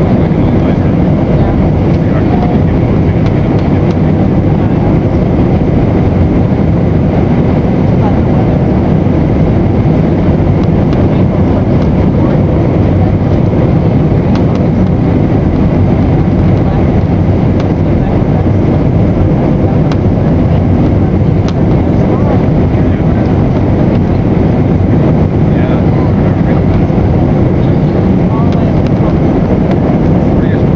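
Airliner cabin noise on final approach: a steady, loud rush of the wing-mounted jet engine and airflow, heard from a window seat over the wing.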